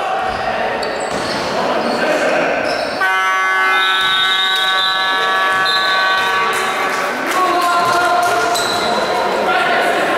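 Sports hall scoreboard horn sounding one steady, unwavering tone for about three and a half seconds, starting suddenly about three seconds in: the final horn ending a basketball game. Court noise and players' voices run around it in the echoing hall.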